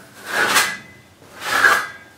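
Plasterer's trowel dragged across a canvas through wet acrylic paint: two scraping strokes about a second apart.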